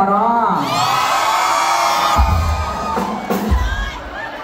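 Concert audience cheering and screaming with many high voices at once, after a few words over the microphone. Two short deep booms come in the second half.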